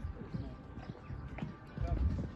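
Hoofbeats of a horse cantering on a sand arena, heard as irregular low thumps, loudest near the end, with people talking in the background.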